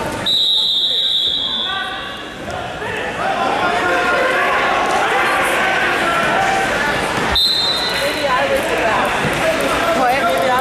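A referee's whistle blows for about a second and a half, then spectators shout and cheer in a large, echoing gym. A second, short whistle sounds about seven seconds in, together with a sharp knock.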